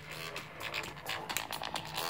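Electronic dance music with a steady beat, heard faintly as it leaks from headphones fed by a phone through a home-made breadboard headphone jack splitter, showing that the splitter passes the signal.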